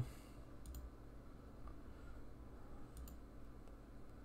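Faint computer mouse clicks: two quick pairs, about a second in and about three seconds in, over a low steady room hum.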